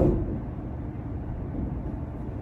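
Steady low background rumble of room noise, with no speech, just after a word trails off at the very start.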